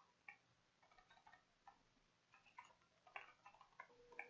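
Faint computer keyboard typing: irregular key clicks in short runs.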